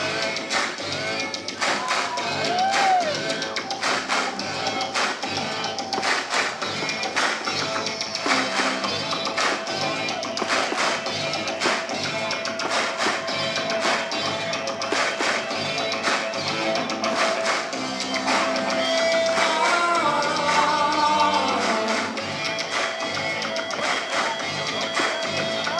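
Live synth-pop through a venue PA, instrumental with no vocals: a steady electronic beat under sustained synthesizer tones, with gliding, pitch-bending figures about two seconds in and again around twenty seconds in.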